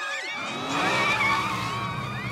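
Cartoon sound effect of a car speeding along, an engine running with tyres screeching.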